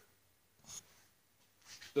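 Near silence: room tone, with one brief faint scratch about a third of a second after halfway into the first second, and a man's voice starting at the very end.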